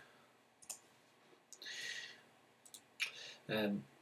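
A few faint computer mouse clicks, with a short soft hiss about halfway through and a man's voice starting near the end.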